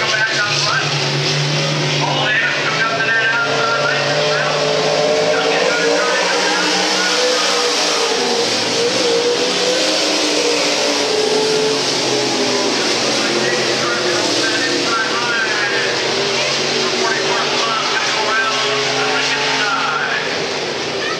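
Pro Stock dirt late model race cars running at race speed on a dirt oval, their V8 engines rising and falling in pitch as they lift for the turns and get back on the throttle.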